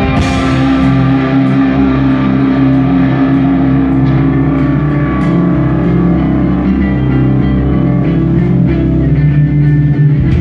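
A live rock band playing loudly: electric guitars, bass and drum kit, with long held low guitar notes.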